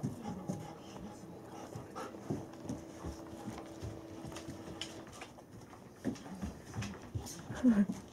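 Bernese mountain dog panting.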